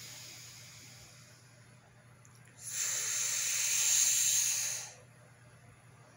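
A person breathing out hard through pursed lips: a steady breathy hiss of about two seconds starting midway, with a fainter out-breath at the start.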